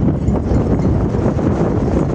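Wind buffeting the phone's microphone: a loud, continuous low rumble that rises and falls with the gusts.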